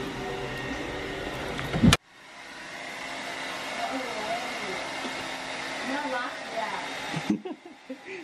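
Handheld hair dryer running steadily, a rushing blow of air over a faint motor hum, as it is used to blow-dry and straighten hair. A sharp click about two seconds in, and the dryer sound stops suddenly near the end.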